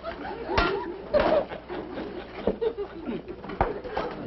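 Studio audience laughing in waves, with a few sharp knocks through it.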